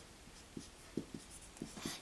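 Dry-erase marker writing on a whiteboard: a few faint, short strokes and taps as symbols are written.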